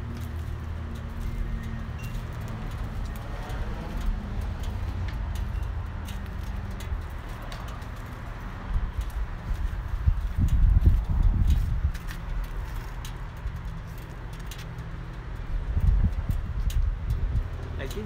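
Harley-Davidson Tri Glide trike's V-twin engine idling with a steady low hum, with louder low rumbles about ten seconds in and again near the end.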